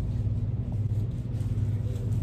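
Steady low hum of a store's background room tone, with no distinct event.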